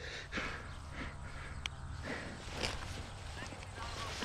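Soft rustling and a few light clicks of a paragliding harness's straps and buckles being handled, over a steady low rumble.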